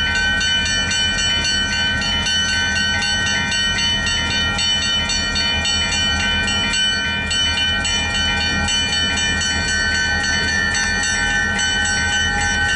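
Grade-crossing warning bell ringing steadily at an even rhythm, over the low rumble of a departing freight train's diesel locomotives.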